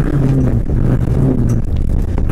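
Rally car's engine pulling hard under full throttle, heard inside the cabin, holding a steady pitch with a few brief dips, over rumble from the loose dirt stage.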